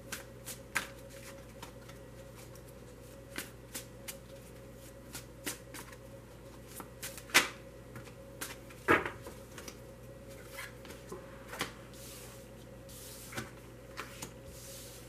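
A deck of tarot cards being shuffled and handled by hand: scattered soft clicks and snaps of cards against each other, with two louder snaps about seven and nine seconds in.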